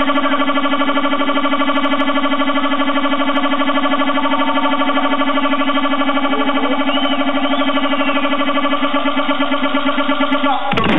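A loud, sustained buzzing synthesizer drone on one steady pitch with a fast pulsing flutter, played over the PA as the intro to an electro DJ set; it wavers slightly near the end.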